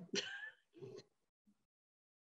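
A person's brief vocal sounds over a video-call line in the first second, then dead silence.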